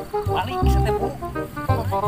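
Background music with a pulsing bass beat, with a wavering, animal-like pitched cry laid over it about half a second in and again near the end.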